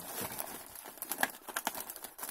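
Plastic mailer bag rustling and crinkling as a hand reaches inside it, with a few sharper crinkles in the second half.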